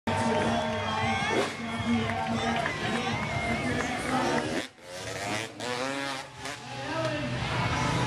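Chatter of a crowd of spectators with a motorcycle engine running under it. The freestyle motocross bike's engine revs up and down about five seconds in, before the rider is airborne off the ramp.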